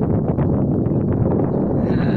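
Wind blowing across the microphone: a steady rush with no breaks.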